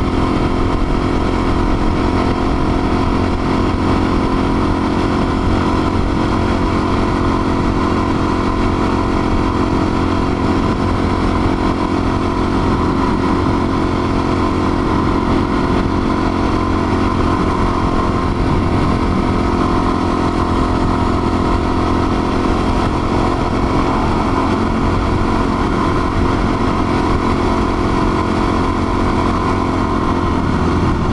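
Suzuki DR-Z400's single-cylinder four-stroke engine running steadily at cruising speed, heard from on board the moving bike.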